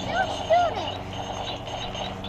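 A child's voice, two short high-pitched vocal sounds in the first second, over a steady low hum.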